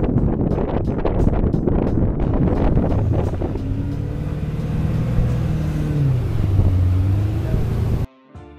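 Motorboat engine running under power while towing, with wind buffeting the microphone; from about three seconds in the steady engine note comes through more clearly and dips slightly near the end.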